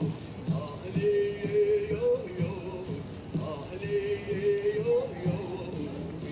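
Pow wow drum group: singers holding long notes that glide down at their ends, over a steady drumbeat about twice a second.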